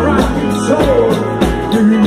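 Live soul-rock band playing loud: two electric guitars over a drum kit with a steady beat, and a melody line that bends up and down in pitch about halfway through.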